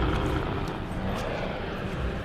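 The Kraken's roar, a film sound effect: a loud, rough, sustained roar at close range.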